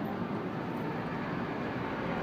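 Military cargo truck's engine running as the truck drives slowly past close by, a steady low rumble that grows stronger in the second half, over general street noise.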